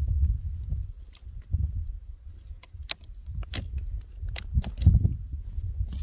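Handling noise from a rock being turned over in the hand close to the microphone: a low, uneven rumble with a few sharp light clicks scattered through it.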